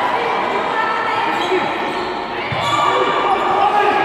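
Futsal match in an echoing sports hall: a steady din of players' and spectators' voices calling out, with the thud of a ball kick about two and a half seconds in.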